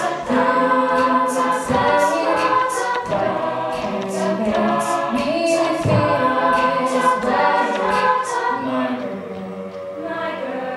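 High-school a cappella group singing in close harmony, with a vocal beatbox laying down a steady snare-and-hi-hat rhythm into a handheld microphone. The beatbox drops out near the end while the voices carry on a little softer.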